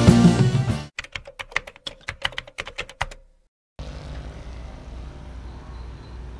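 Background rock music cuts off about a second in, followed by roughly two seconds of rapid, sharp typing-like clicks, about nine a second. After a brief silence, a faint steady background hiss.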